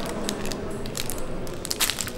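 Clear plastic food bag of boiled green beans being handled, its thin plastic rustling and crinkling, with a couple of sharper crackles near the end.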